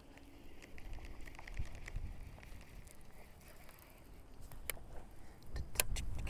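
Baitcasting reel cranked to bring in a spinnerbait: a faint whir with scattered small clicks, after a sharp click right at the start.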